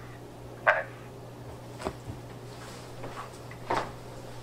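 Telephone line with a steady low hum, broken by two short voice-like sounds, about a second in and near the end, and a single click near the middle.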